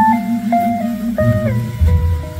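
Archtop jazz guitar playing a slow melodic line of single held notes, one after another, over sustained upright bass notes in a slow jazz ballad.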